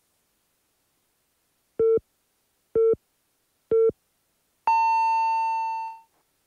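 Radio hourly time signal: three short, lower beeps about a second apart, then one long, higher beep marking the top of the hour, 7 o'clock.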